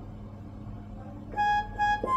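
A low steady hum, then, about two-thirds of the way in, a harmonium begins playing two short held notes.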